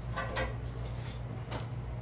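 Pliers being picked up and handled at a worktable: three light clicks and knocks over a steady low hum.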